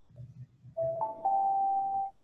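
A steady high electronic tone from the computer's audio setup, jumping to a higher pair of tones about a second in and cutting off suddenly. It is typical of audio feedback between the microphone and speakers.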